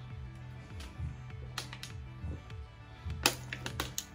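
Background music with a steady low bass line, broken by a few sharp crackles and clicks as a plastic water bottle is drunk from and handled.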